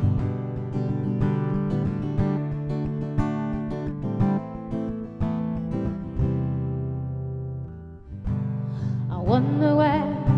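Solo acoustic guitar playing a slow song intro, with the chords struck and left to ring. Near the end a woman's singing voice comes in.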